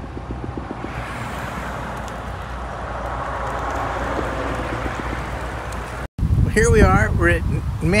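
Steady road and engine noise of a moving vehicle, slowly growing louder, which cuts off abruptly about six seconds in; a voice then starts talking.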